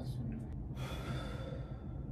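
A person's long breath out, a soft hiss lasting about a second that starts under a second in.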